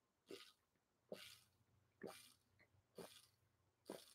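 Faint swallowing as a man drinks from a water bottle: five gulps, about one a second.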